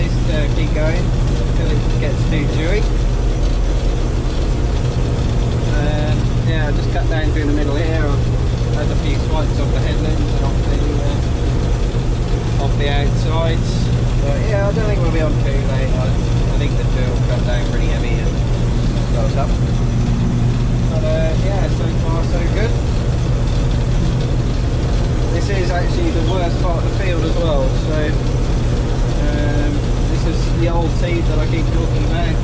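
Combine harvester running steadily while cutting wheat, a constant low drone of engine and threshing gear heard from inside the cab.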